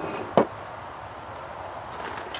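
Steady high insect buzzing in the background, with a single sharp knock less than half a second in.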